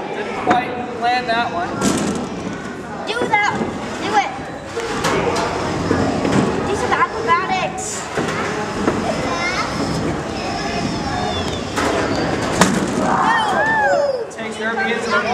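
Spectators' chatter and children's voices, crossed by several sharp knocks and thuds of hobbyweight combat robots hitting each other and the arena.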